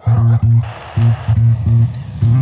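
Bass guitar playing a riff of short, repeated low notes, starting suddenly.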